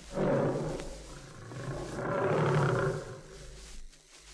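Lion roaring twice as a radio-play sound effect: a short roar that fades within the first second, then a longer one that builds and dies away shortly before the end.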